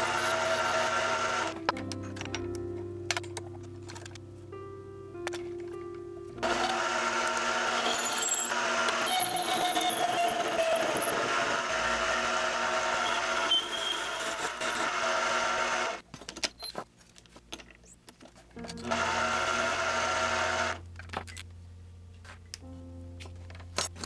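Background music, with a mini lathe running under it in the middle stretch and again near the end while it turns aluminum.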